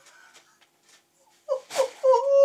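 A person's high-pitched, breathless laughter: a near-silent pause of about a second and a half, then short squeaky laughing bursts near the end.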